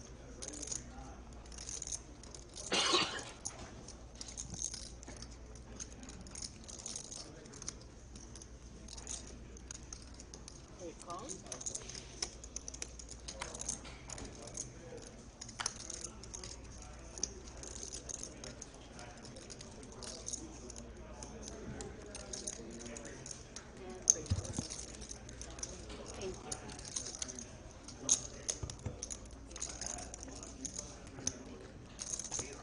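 Poker chips clicking and rattling as players riffle and handle their stacks at the table, with a brief louder burst about three seconds in and a sharp click near the end.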